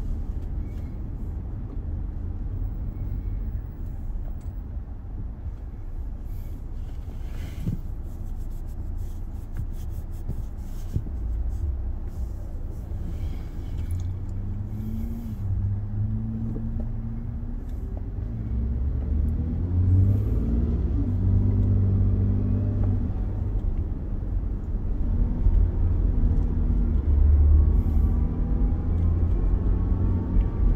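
Car engine and road rumble heard from inside the cabin: a low steady rumble while held in traffic, then an engine note that climbs in steps and grows louder through the second half as the car pulls away and gathers speed.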